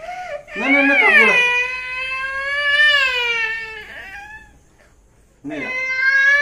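A young girl crying, with two long, high wailing cries that rise and fall: the first starts about half a second in and fades out by about four seconds, and the second starts near the end.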